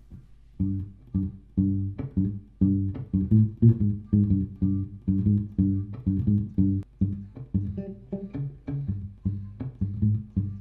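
Electric bass guitar playing a plucked line of low notes, several a second, after a short pause at the start.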